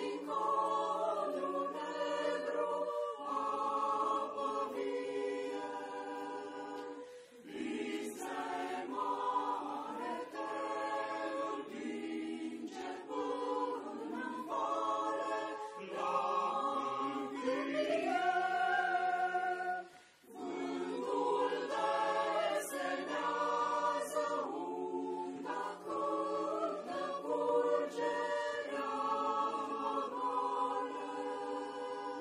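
Mixed choir of men's and women's voices singing a cappella in parts, phrase after phrase, with two brief breaks between phrases about 7 and 20 seconds in.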